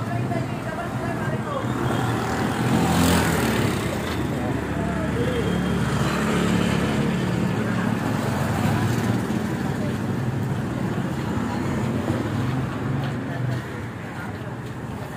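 Street traffic: motor engines running steadily, with a vehicle passing loudly about three seconds in, and voices in the background.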